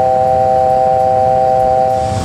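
A steady, unbroken tone of several pitches sounding together over a low rumble, in an Airbus A320 flight simulator cockpit.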